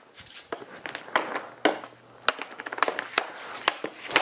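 Hockey stick blade clicking and sliding a puck on a plastic shooting pad, with a few sharper cracks as pucks are shot. The cracks ring on briefly in the small room.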